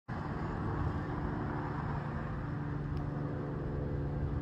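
Steady road traffic noise with a low, even engine hum from a vehicle running nearby.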